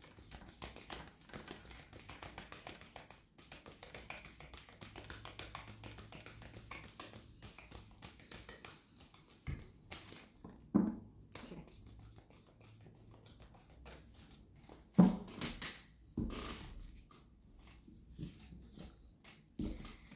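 A deck of oracle cards being shuffled by hand: a soft, continuous patter of cards slipping and slapping against each other for about ten seconds, then a few separate knocks and taps as the cards are handled.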